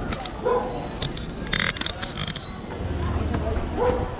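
Outdoor walking ambience with short bursts of voices and a thin, high steady tone about a second in and again near the end.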